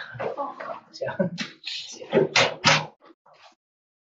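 People talking, with a door being shut during the first few seconds. The talk fades to a few faint scraps for the last second.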